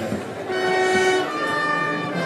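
Processional brass band holding long, loud chords of a slow funeral march, the chord changing about a second in.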